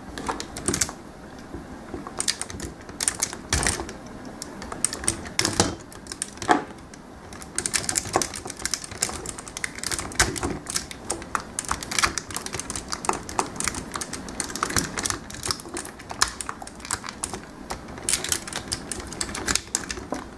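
Parts of a Transformers Masterpiece Optimus Prime action figure clicking and snapping as the forearm panels and hands are worked by hand: many small irregular clicks, several a second.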